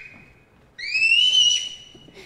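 A high whistling tone that glides upward about a second in and holds briefly before fading.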